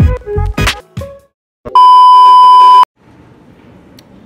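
Music with heavy bass beats stops about a second in, and after a brief gap a loud, steady electronic beep at one high pitch sounds for about a second. Faint room tone follows near the end.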